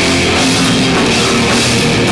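Live heavy metal band playing loudly: distorted electric guitars over a drum kit, with the singer's vocals into the microphone at the start.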